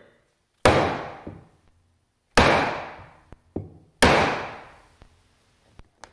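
Three hard mallet blows on a clamped, glued-up hardwood block, about a second and a half apart, each ringing out for about a second, with a few light knocks between them. The block holds and neither the glue lines nor the wood give way.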